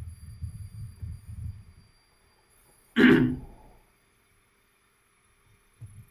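A person clears their throat once with a short, loud cough about three seconds in, after a low, muffled rumbling in the first two seconds.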